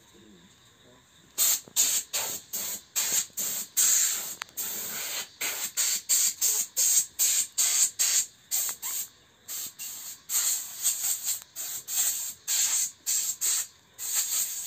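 Paint spray gun hissing in short, repeated bursts, about two to three a second, as it is triggered on and off while spraying paint, starting about a second and a half in.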